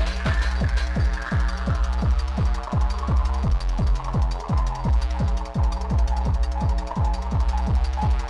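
Hardtek electronic dance track: a fast, steady kick drum about three beats a second, each kick dropping in pitch, over a droning bass, with a higher synth line that slowly sweeps downward.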